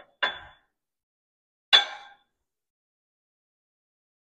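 Steel parts clanking on the steel bed of a shop press as a hydraulic cylinder is set up on steel blocks: two metallic clanks with a brief ring, about a second and a half apart, the second louder.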